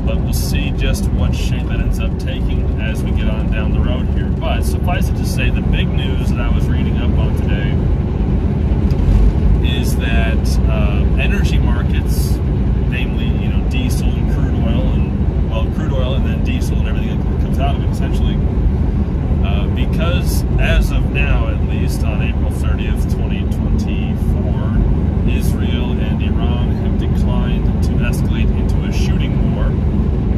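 A man talking over the steady low drone of a semi-truck's engine and road noise inside the moving cab.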